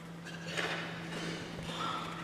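Quiet pause in a large parliament chamber: a steady low hum under faint scattered knocking and rustle.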